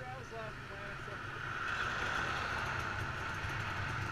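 Dirt bike engine idling close by while a second dirt bike rides up, its engine growing louder from about a second and a half in.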